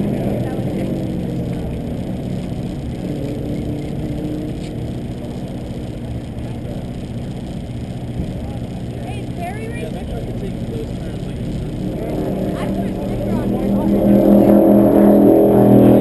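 A Subaru's engine running on a lap of the road course, heard from the start/finish area, growing louder over the last few seconds as the car comes back toward the finish.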